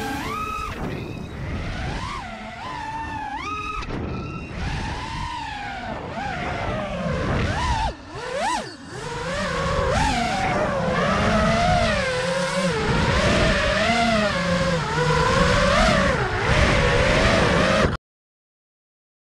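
The brushless motors and propellers of a 5-inch FPV racing quadcopter (T-Motor 2207 motors) whine in flight, the pitch rising and falling constantly with the throttle. About eight seconds in the whine drops away briefly, then surges in one sharp rise and fall, and it runs louder after that.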